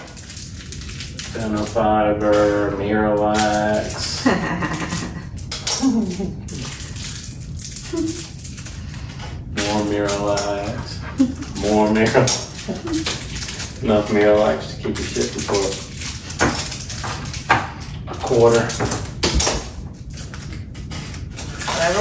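Two people talking and laughing, with scattered light clicks and clinks of metal cabinet knobs and screws being handled on a stone countertop.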